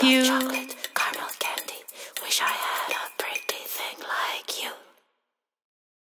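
A sung note from the children's song fades out in the first second. Soft, breathy, whispered-sounding vocal sounds with small clicks follow, and the audio cuts to silence about five seconds in.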